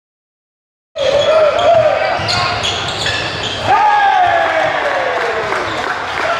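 Basketball bouncing on a hardwood gym floor, a few sharp bounces around the middle, with gliding sneaker squeaks and voices on the court.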